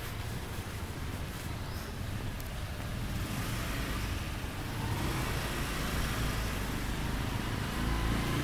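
Motorbike engine running steadily while riding along a street, with road and wind noise. It grows louder about halfway through.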